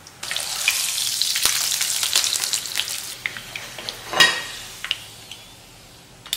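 Corn tortilla frying in oil in a pan: a loud sizzle full of crackling pops that starts just after the beginning and dies down after about three seconds, leaving scattered pops. A sharp click comes about four seconds in.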